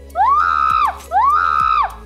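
Two identical high pitched swoops, each gliding up, holding and gliding back down over about three quarters of a second, laid over light background music.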